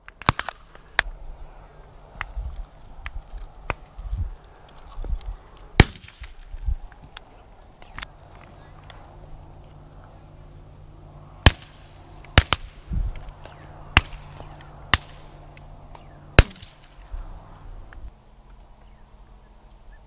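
A string of shotgun shots at varying distances across a dove field. The sharpest comes about six seconds in and several follow between eleven and seventeen seconds, each a short crack with a brief tail, with fainter pops in between.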